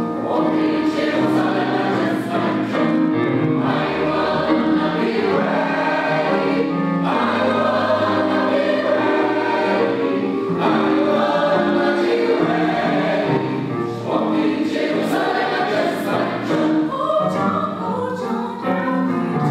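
A choir singing in several voice parts together, phrase after phrase, with brief pauses between phrases.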